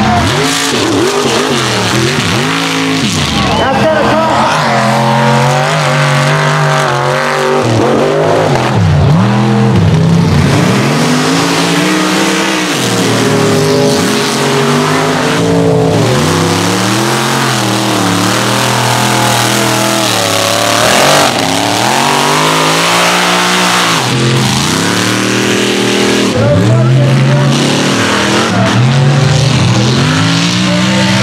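Mega mud trucks' engines revving hard, the pitch climbing and dropping again and again as the trucks power through the mud course, one run after another.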